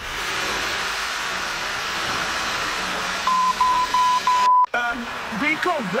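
A steady static hiss that cuts in suddenly, with a high steady beep sounding four times in quick succession in the second half. Both stop abruptly, and a voice starts talking just before the end.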